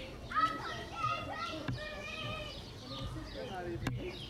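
Children's voices calling and chattering, mixed with other talk too indistinct to make out, and a single sharp click near the end.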